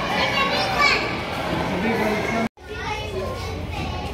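Children's voices and crowd chatter, with high children's calls in the first second. About two and a half seconds in, the sound breaks off abruptly at an edit and resumes as quieter chatter.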